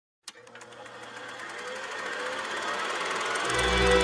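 Film projector starting with a click and running with a rapid, steady clatter that grows louder. Music with a deep bass note comes in about three and a half seconds in.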